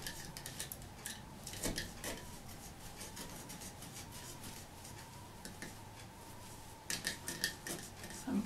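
A very sharp box cutter slicing through a hardened plaster-cloth shell and the plastic sheet beneath it. It makes irregular short scratchy scrapes and clicks, busiest at the start and again near the end.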